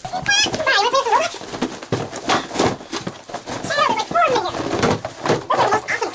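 Cardboard boxes being shifted and set down, with a run of knocks and scuffs. Twice a high, wavering, wordless squeal of a voice is heard: once near the start and again about four seconds in.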